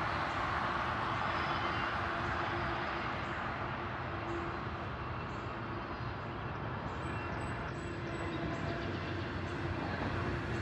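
Double-stack intermodal freight train passing at steady speed: the continuous noise of its cars' steel wheels rolling over the rails.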